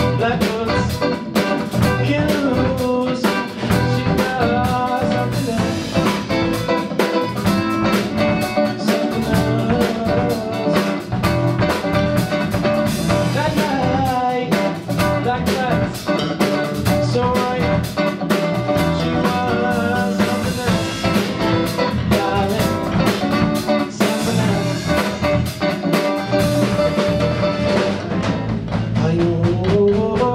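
A small live rock/jazz band playing: electric guitar, electric bass guitar and drum kit together, loud and continuous.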